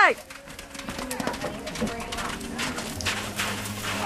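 Hoofbeats of a galloping horse on soft arena dirt, irregular and fading as the horse moves off, under spectators' voices in the background.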